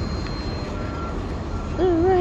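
Traffic noise on a city street: a steady rumble of passing vehicles, with a short high beep about a second in.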